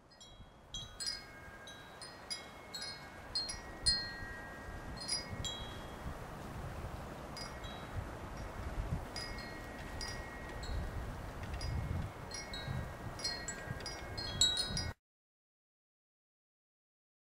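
Wind chimes tinkling in irregular strikes, each ringing on briefly, over a low rumble of wind on the microphone. The sound cuts off suddenly near the end.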